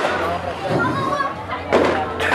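Indistinct voices and crowd noise between songs at a live rap show, over a steady low hum, with a short loud rush of noise near the end.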